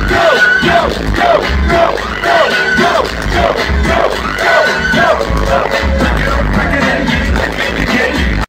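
Loud live music from a concert sound system, heard from within the crowd: a short falling melodic hook repeats over and over on a heavy bass beat.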